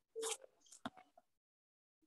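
A brief faint rustle, then a sharp click and a couple of smaller ticks within the first second or so, followed by near silence.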